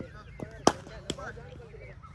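Cricket ball struck by a bat in the practice nets: a sharp crack about two-thirds of a second in, then a second, fainter knock about half a second later.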